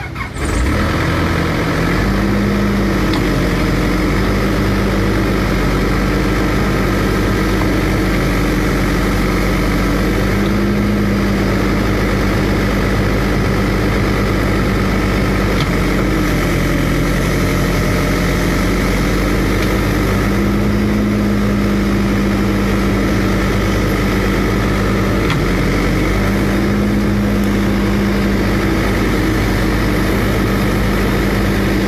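Diesel engine of an excavator running close by, its speed rising briefly and settling back about four times as it works.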